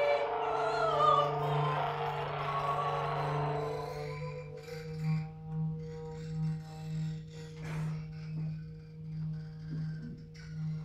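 Free-improvised live music for clarinet, electric guitar and voice with objects. Falling, sliding pitched tones fade out over the first few seconds, leaving a low sustained drone that swells and fades in slow, regular pulses under quieter held high tones, with a few small clicks.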